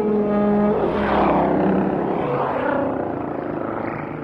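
Electroacoustic tape music: held horn-like tones give way, about a second in, to a wash of rushing noise that swells and then slowly fades.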